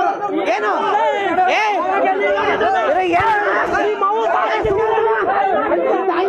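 A group of men talking and shouting over one another in a heated argument, many loud voices overlapping without a break.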